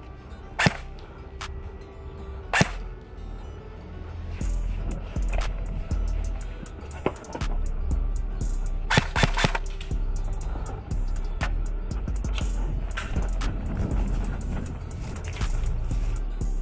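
Airsoft gun shots: two sharp single snaps in the first three seconds, then a quick string of shots about nine seconds in. Underneath runs background music with a heavy beat that grows louder about four seconds in.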